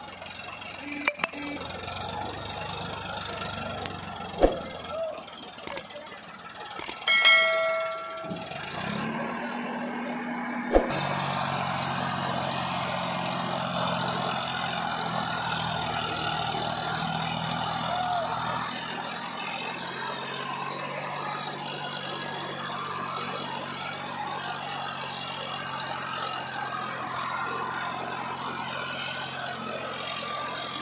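Farmtrac 45 Supermaxx tractor's diesel engine working under load from about eleven seconds in, pulling a trolley through soft soil. It runs steadily with a lower note dropping away about halfway through. Before it starts there are a few sharp knocks and a short horn-like blast about seven seconds in.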